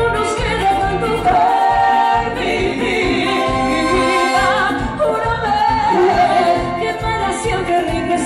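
Live Latin dance band playing, with a lead vocal singing over a steady bass-and-percussion pulse.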